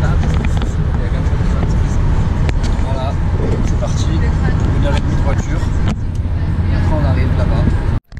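Steady low rumble of engine and road noise inside a moving passenger van's cabin, heard at highway speed.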